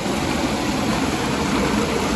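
Snowmelt mountain stream rushing and splashing over boulders: a steady, even rush of water.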